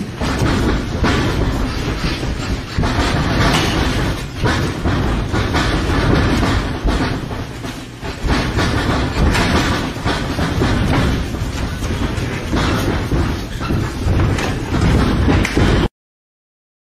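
Dense, loud rumbling noise with many thuds from sparring in a boxing ring, footwork and blows on the canvas, cutting off suddenly near the end.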